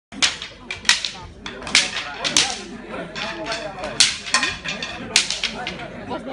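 Wooden sticks striking each other in a Maasai stick-fighting display: about half a dozen sharp, irregularly spaced cracks, with voices in between.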